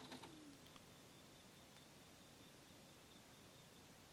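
Near silence: room tone, with one faint, short falling tone in the first half second.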